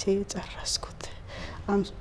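Speech only: a woman talking softly in Amharic in short phrases with pauses.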